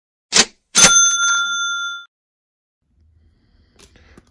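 Edited-in sound effect: a short whoosh, then a bright bell ding that rings out for about a second, marking an on-screen caption.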